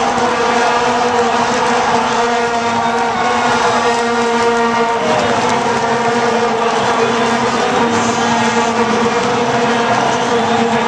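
Massed vuvuzelas blown by a stadium crowd, a loud, steady drone held on one low pitch with its overtones, over the general noise of the crowd.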